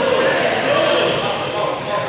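Several young people's voices calling out and chattering over one another in a large sports hall.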